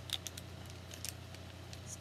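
Plastic and card product packaging being pulled and peeled open by hand, giving a scatter of small crackles and clicks.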